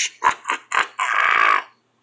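A man's hoarse laugh: a few short bursts, then one longer breathy rasp about a second in that cuts off abruptly.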